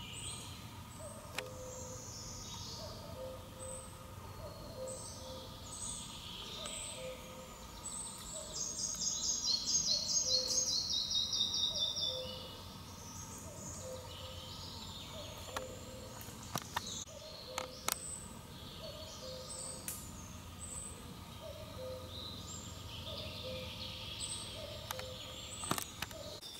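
Songbirds singing in a forest, several short phrases overlapping. The loudest is a fast trill of repeated notes that steps down in pitch, lasting about four seconds, starting about eight seconds in.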